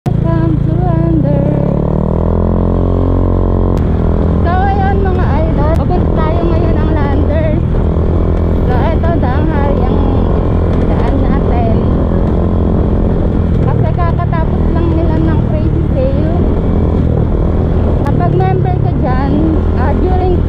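Motorcycle engine running as the bike rides along, its pitch rising as it speeds up in the first few seconds, then holding fairly steady. A person's voice talks over it.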